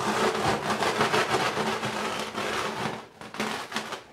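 Wooden rolling pin rolled back and forth over dried bread crusts on a cloth, crunching and crackling them into crumbs. It eases off about three seconds in, then rolls briefly again.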